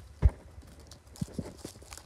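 A heavy thump shortly after the start, then a few lighter knocks in the second half.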